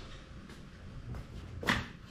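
Quiet garage room tone with a few faint clicks of someone moving about and handling things, and one short knock or scuff near the end.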